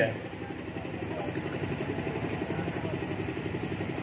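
A small engine idling steadily, with a fast, even pulse, through a pause in the speech.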